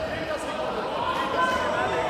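Several people's voices calling out over the background noise of a busy sports hall, likely coaches shouting to grapplers on the mat.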